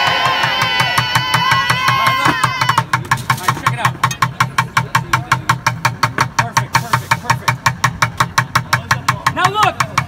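Crowd cheering and shrieking over a fast, low bucket beat. About three seconds in, this gives way to very fast, even drumming on plastic buckets, about six sharp strokes a second.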